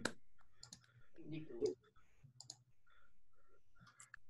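Scattered faint clicks with a brief, low murmur of a voice about a second and a half in, heard over a video-call line.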